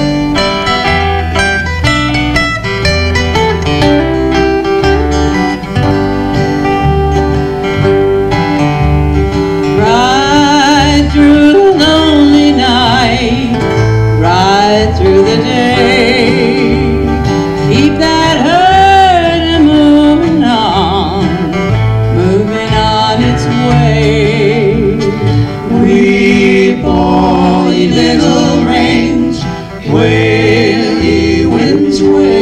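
Three acoustic guitars strumming a slow country-western song; about ten seconds in, voices join singing over them.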